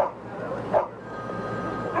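Police dog barking in short single barks, a little under a second apart, over steady street noise.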